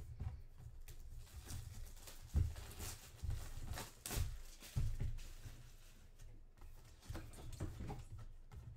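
Clear plastic wrap crinkling and a cardboard box being handled: irregular rustles and crackles with soft thumps, the sound of a sealed box being unwrapped.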